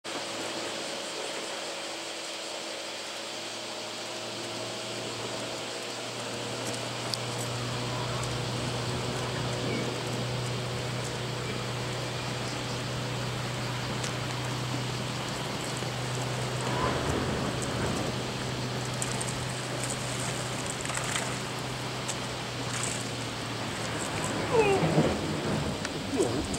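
Steady rushing of wind on the microphone with the wash of the sea, with a low steady hum through most of the middle. A few brief voices come in near the end.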